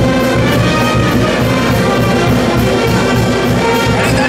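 A band with trumpets and trombones playing lively music with a steady beat.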